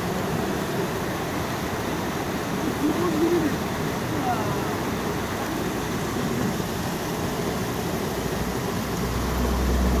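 Mountain stream rushing over small cascades between rocks: a steady rush of water, with faint voices about three seconds in and a low rumble near the end.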